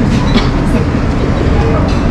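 Heavy, steady low rumble of passing vehicles, with faint voices in the background.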